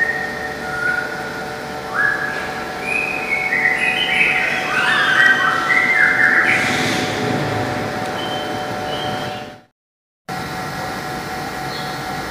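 A run of whistled notes stepping up and down in pitch, each held briefly, over a steady background hum. The sound cuts out completely for about half a second near the end.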